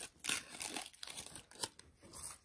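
A clear plastic bag of jewelry crinkling and rustling as it is handled and moved, with a few sharp clicks.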